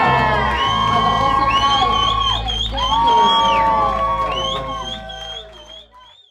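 Live band's closing bars: sustained synth chords over a steady bass, with whoops from the crowd, fading out over the last second or so.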